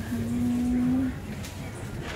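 A person's drawn-out closed-mouth hum, one steady low 'mmm' that stops about a second in, over the murmur of a busy shop.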